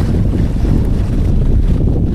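Wind buffeting a phone's microphone on an open sailboat deck: a steady low rumble, with no break in it.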